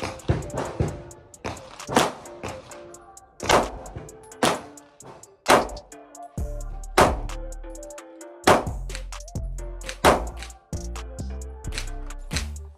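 Slow, deliberate shots from a 9mm Glock pistol fitted with a Radian Ramjet barrel and Afterburner compensator, about one to one and a half seconds apart, fired for accuracy at close range. Background music plays underneath.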